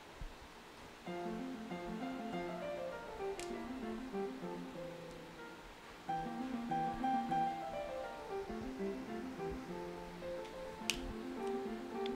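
Background music on plucked acoustic guitar, a picked melody that starts about a second in and grows louder about six seconds in. Two sharp clicks cut through it, the louder one near the end.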